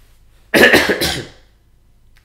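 A man coughing twice in quick succession, about half a second in.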